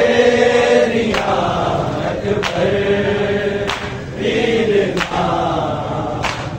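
Male voices sing a Punjabi noha, a mourning lament, in long drawn-out lines. A crowd of men beats their chests (matam) in unison over it, about one beat every 1.3 seconds.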